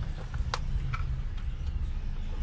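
A few light clicks and taps from handling a packet of heat-shrink tubing, the sharpest about half a second in, over a steady low background rumble.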